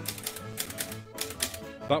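Typewriter keys struck in a short run of about four letters, typing "bye" with one extra letter.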